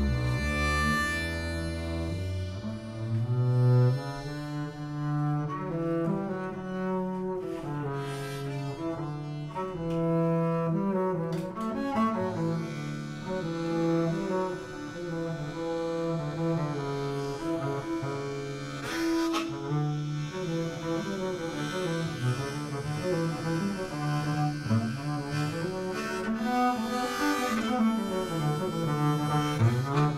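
Bowed upright double bass and diatonic harmonica playing together as a duo, weaving moving melodic lines with occasional sharp accents.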